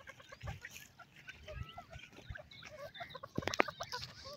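A small group of francolins giving soft, scattered clucks and short chirps as they forage. A few sharp clicks come about three and a half seconds in.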